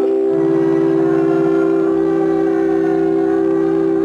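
Church organ holding one sustained chord, with a bass note entering under it and shifting again about a second and a half in.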